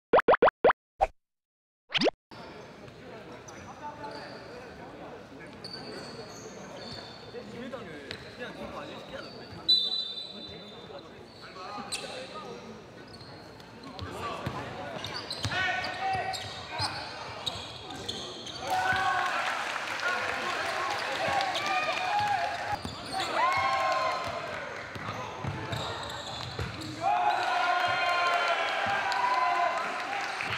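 A few quick electronic beeps from an intro graphic, then a basketball game in an echoing gymnasium: a ball bouncing on the wooden court, brief sneaker squeaks, and players' shouts and calls that grow louder through the second half, loudest near the end.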